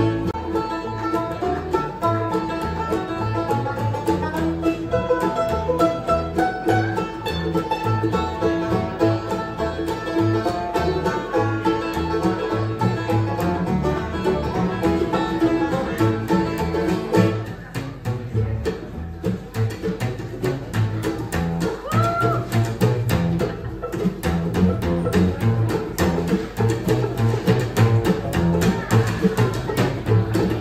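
A bluegrass band playing live without vocals: banjo, mandolin, acoustic guitar and plucked upright bass over a steady beat. A little over halfway the playing thins for a moment, then fills back in.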